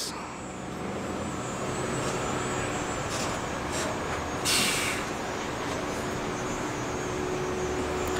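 Steady outdoor background noise with a faint low hum, broken by a brief hiss about four and a half seconds in.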